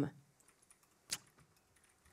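A woman's spoken 'um' trailing off, then a pause of faint room tone broken by one short, sharp high-pitched click about a second in.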